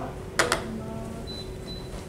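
Camera handling noise: two quick, sharp clicks about half a second in as the camera is moved, then faint room noise.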